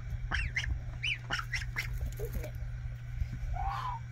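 Domestic goslings peeping: a string of short, high calls, several rising and falling in pitch, a few a second, thinning out in the second half.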